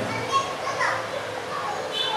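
Children's voices in the background: short bursts of high-pitched chatter and calls.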